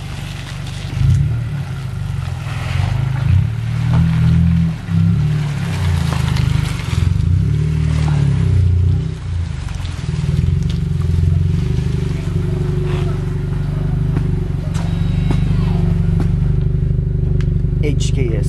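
A 10th-generation Honda Civic Si's 1.5-litre turbocharged four-cylinder running as the car creeps into a driveway, its note rising and falling, then settling into a steady idle about ten seconds in, heard from the exhaust.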